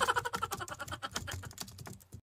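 Keyboard typing sound effect: a rapid, uneven run of key clicks.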